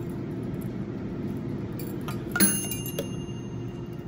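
A single sharp metallic clink with a brief bright ring about two and a half seconds in, from a metal food can being handled, over a steady low room hum.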